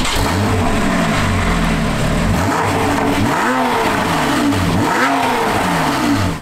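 Porsche 991.1 Targa 4S naturally aspirated flat-six, just started, running at idle and then revved several times, each blip rising and falling in pitch.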